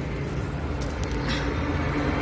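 Steady low rumble of a motor vehicle's engine running, with a held hum that grows a little louder near the end.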